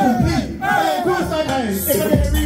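Shouted rap vocals through a microphone and PA, with crowd voices joining in, loud and without a beat.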